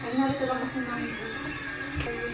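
A brief voice in the first half second, then faint background music with a few held tones.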